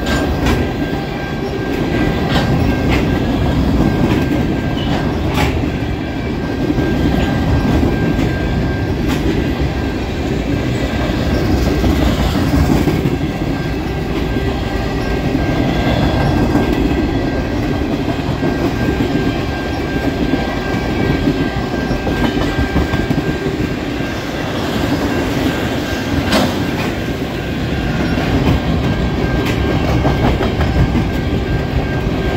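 Long freight train of tank cars and covered hoppers rolling past: steel wheels rumbling and clacking over the rail joints, with an occasional sharp clank. A thin steady high tone runs through the first half and then fades.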